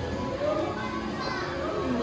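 Indistinct chatter of children and adults in a busy shop, several voices overlapping with no clear words.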